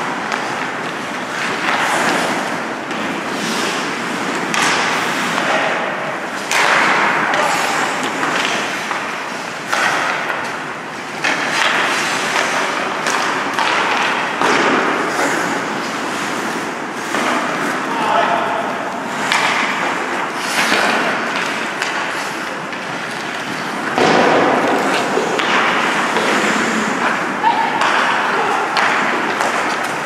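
Ice hockey play close to the rink boards: repeated thuds and slams of pucks and bodies against the boards, over a continuous scrape of skates on the ice, with players' voices calling out now and then.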